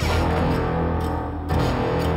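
Background score music: a low sustained drone with held tones above it, rising to a louder new chord about one and a half seconds in.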